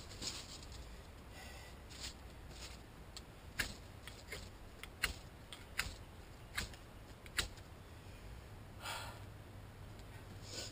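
A string of sharp clicks, about eight of them spaced a little under a second apart, from hands working a small fire lay of paper and kindling while trying to light it. A short rustle comes near the end.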